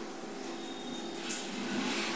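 Quiet steady background hum with light hiss, and one brief faint sound about a second in.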